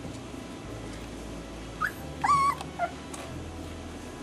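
Month-old golden retriever puppy whimpering: a short high cry a little before two seconds in, then a longer, louder wavering whine and a brief last yelp.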